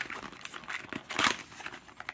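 A cardboard Topps trading-card box being opened by hand: the flap is pulled open and the wrapped card pack inside crinkles. There is a louder crinkle just past a second in.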